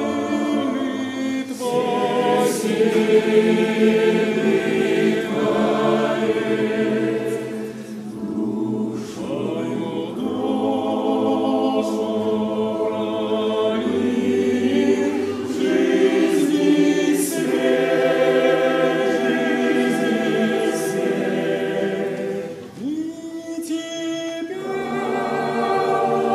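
Mixed youth choir of men's and women's voices singing a hymn in parts, phrase by phrase, with short dips between phrases.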